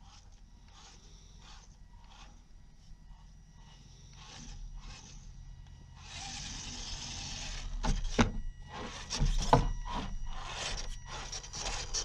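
CR-12 Tioga RC crawler working its way over wooden planks: a burst of tyres and chassis scraping on the wood about six seconds in, then several sharp knocks and more scraping as it comes closer.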